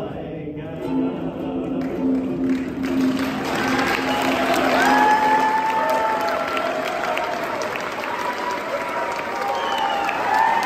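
Three voices hold the final chord of a song in close harmony; it ends about two and a half seconds in. An audience then applauds, with cheering voices over the clapping.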